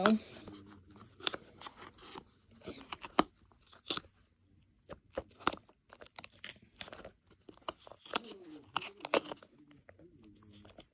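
Irregular clicks, crackles and crinkles of a small box and its packaging being handled as an item is pushed into it by hand.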